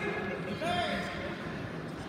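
Spectators' voices in a gym: crowd chatter with one short shout about half a second in, during a lull between louder coaching shouts.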